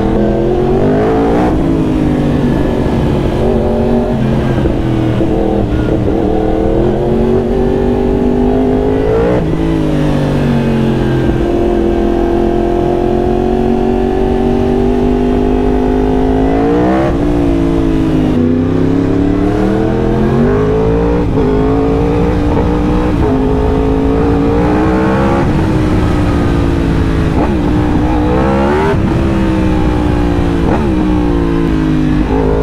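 2018 Yamaha R1's crossplane inline-four engine under way, its pitch climbing and dropping repeatedly as it pulls through the gears and backs off, with a steady stretch of several seconds in the middle.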